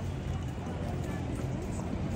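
A horse's shod hooves stepping and shifting on a cobbled stone floor, over a steady low background rumble.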